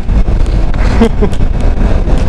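Kawasaki Versys motorcycle riding along, its engine running under heavy wind noise on the microphone, with a short laugh about a second in.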